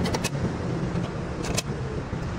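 A few light metallic clicks as a pillow-block bearing housing is fitted onto the tiller's steel side plate: a quick cluster near the start and another pair about one and a half seconds in, over a steady low background rumble.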